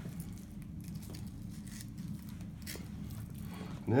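Fillet knife slicing along the back of a northern pike, with faint scattered clicks as the blade passes over the bones. A steady low hum runs underneath.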